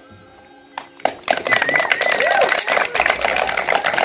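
The last chord of two acoustic guitars fades out. About a second in, a group breaks into loud applause with cheering.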